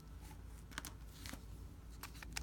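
Faint rustle of a hand and fountain pen being handled over paper, with a few light clicks near the middle.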